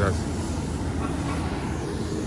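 Low, steady rumble of street traffic: a heavy dump truck towing a trailer driving through the intersection.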